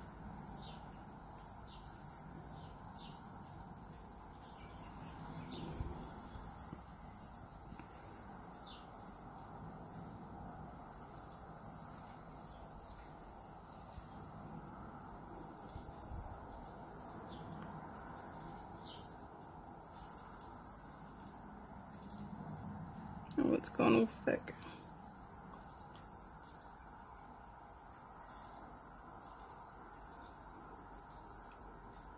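Faint, steady, high-pitched insect chirping, pulsing about one and a half times a second. A short, louder sound breaks in about three-quarters of the way through.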